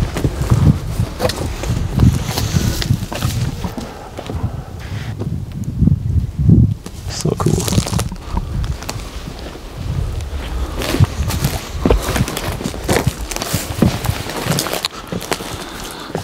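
Footsteps and rustling through dry grass and weeds, with irregular low knocks and scuffs as people walk outdoors.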